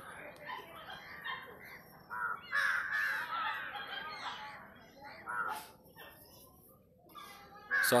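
Crows cawing, several calls, the loudest run a little after two seconds in.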